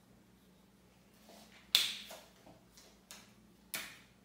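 A marker on a whiteboard making a few short, sharp clicks and taps over quiet room tone, the loudest a little under two seconds in.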